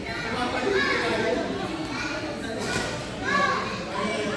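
Voices of several people talking and calling out at once, echoing in a large sports hall.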